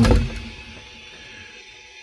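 A drawn-out spoken 'uh' trailing off, then a quiet stretch of faint, steady background sound.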